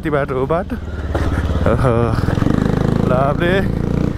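Bajaj Pulsar 180's single-cylinder engine running as the motorcycle rides slowly over a dirt track, getting louder about a second or two in. The rider's whooping voice comes over it in short bursts.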